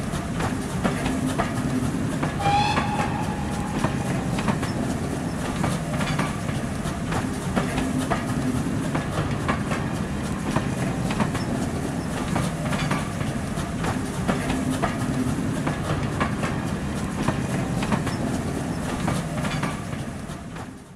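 A railway train running on the rails: a steady rumble with frequent clicks from the wheels over the rail joints. A brief train whistle sounds about two and a half seconds in.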